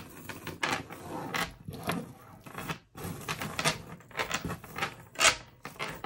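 Metal chain being taken out and handled: a run of light clinks and rustles as the fine paperclip-link chain moves, with a sharper clack about five seconds in.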